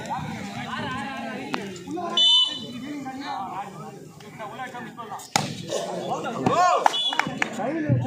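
Voices of players and spectators, with a short shrill referee's whistle blast about two seconds in and a briefer one near seven seconds. There is also a single sharp smack a little past five seconds.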